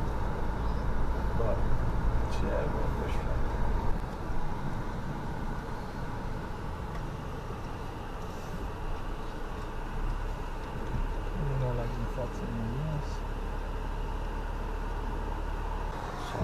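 Steady engine and road noise heard from inside a Mercedes car being driven, a low rumble with tyre hiss, louder for the first few seconds and then settling. A faint murmured voice comes in briefly about two-thirds of the way through.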